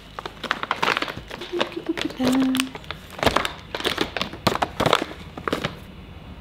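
Crinkling and rustling of candy packaging and gift items, with irregular light clicks and knocks, as boxed chocolates and other gifts are packed into a woven basket.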